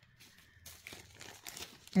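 Faint crinkling and light clicking of small crystal beads being handled and picked out, scattered and a little busier in the second half.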